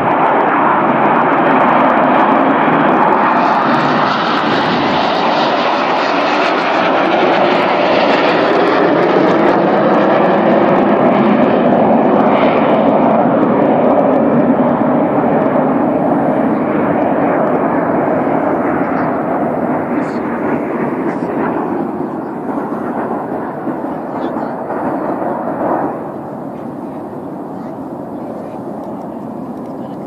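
Red Arrows' BAE Hawk T1 jets flying a display pass: loud jet noise that builds in the first second, holds with a slowly gliding pitch, then fades gradually. It drops off suddenly about four seconds before the end, leaving a quieter steady noise.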